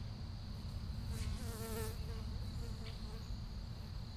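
A flying insect buzzing briefly past, its pitch wavering, a little over a second in. Under it runs a steady high-pitched insect drone and a low rumble.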